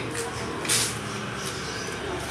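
Electric swing-gate operator motor running with a steady low hum as the remote-controlled gate swings open, with a short hiss under a second in.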